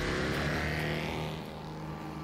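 Motorcycle engine running steadily, easing slightly in level near the end.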